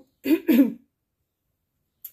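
A woman gives a short double cough, clearing her throat: two quick bursts a fraction of a second apart.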